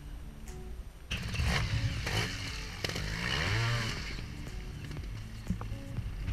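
A trials motorcycle engine revs hard in bursts, starting about a second in, its pitch rising and falling, then eases off. Background music plays underneath.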